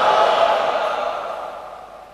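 A congregation's shouted reply of many voices together, trailing off and fading out over about two seconds.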